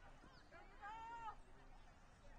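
Near silence with a single faint, high-pitched shout, about half a second long and arching in pitch, about a second in: a distant voice calling out across a soccer field.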